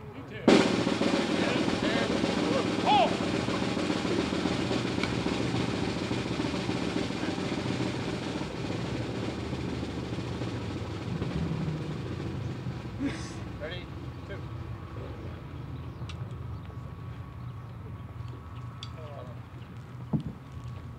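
Snare drum roll starting abruptly about half a second in and running on, slowly fading, while the colors are marched off.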